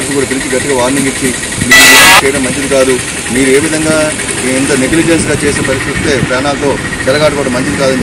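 A man talking into a handheld microphone over a steady vehicle engine running in the background. A loud rush of noise lasting about half a second comes about two seconds in.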